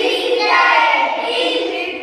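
A group of children chanting multiplication tables together in a sing-song voice.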